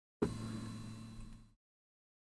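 Low steady hum with faint hiss, starting with a click and cutting off abruptly about a second and a half in.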